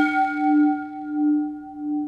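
A single struck bell tone, like a singing bowl, rings out as a logo sting, pulsing slowly in loudness as it fades.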